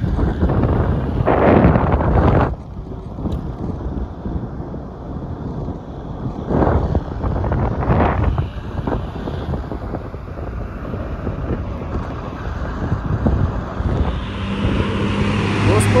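Wind buffeting the microphone of a camera held out of a moving car, over the car's low road rumble, with stronger gusts about a second and a half in and again around seven to eight seconds. A steady low hum joins near the end.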